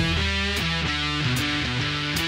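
Short music jingle led by guitar, playing a run of changing notes over a heavy bass line at a steady loudness.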